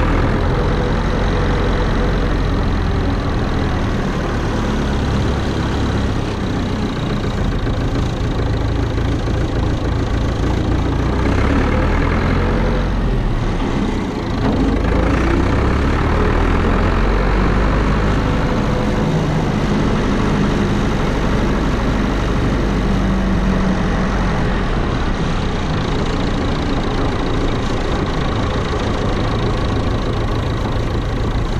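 Massey Ferguson tractor's engine running as the tractor drives along, a steady low rumble heard close up from the mudguard, easing briefly about halfway through before picking up again.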